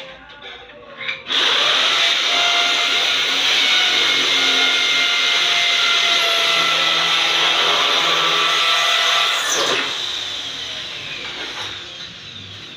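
Electric drill motor running steadily from about a second in, then easing off near the end.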